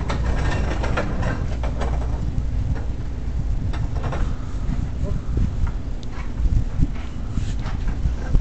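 A bristle brush scrubbing oil paint onto a stretched canvas: irregular scratchy strokes over a steady low rumble.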